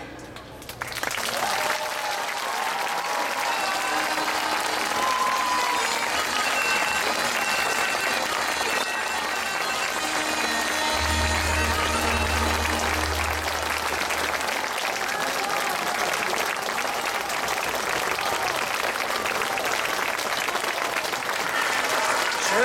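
A large audience applauding steadily, the clapping rising about a second in after the end of a recited poem, with music faintly underneath.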